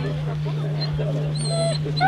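German Shepherd Dog giving high-pitched whines about a second and a half in, over background voices and a steady low hum.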